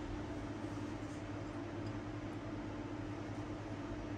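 Steady mechanical hum and hiss with a constant low tone, from the shop's row of refrigerated drinks coolers.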